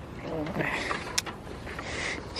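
A brief, wavering voice sound, then a single sharp click about a second in.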